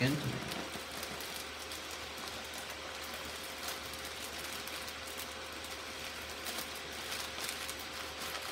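Faint rustling and a few light clicks of items being handled in a bag, over the steady hum and faint whine of a running desktop PC.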